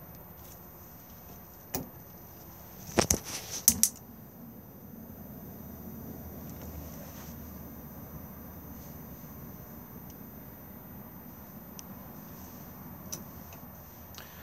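Caravan gas oven being lit: a few sharp igniter clicks about three seconds in, then the oven burner's flame burning with a low, steady rush.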